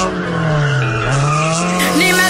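A car's engine revving with tyre squeal, the engine note dipping about halfway through and then rising again.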